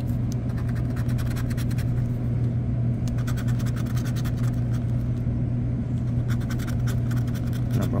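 Scratch-off lottery ticket being scratched with a scratcher tool in quick repeated scraping strokes, sparser in the middle, over a steady low hum.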